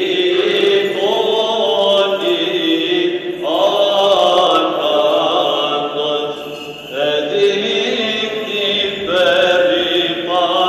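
Byzantine chant sung unaccompanied at a Greek Orthodox festal vespers, in long melismatic phrases that pause briefly about three and a half and seven seconds in before starting again.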